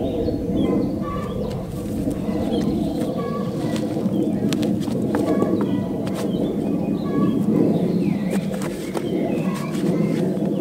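Birds chirping in short repeated calls over a steady low rushing noise, with a few faint clicks.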